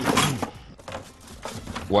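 A man speaking Egyptian Arabic at the start and again near the end. In between is a quieter stretch with a few faint knocks.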